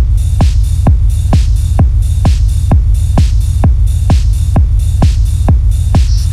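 Techno track in a DJ mix: a steady four-on-the-floor kick drum a little over two beats a second over a heavy, continuous bass, with hi-hat hiss between the kicks.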